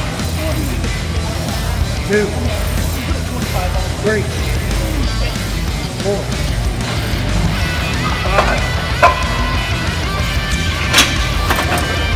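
A man grunting and breathing hard through reps of a heavy leg press, roughly one strained vocal effort every two seconds, with louder yells in the second half. Background music plays throughout.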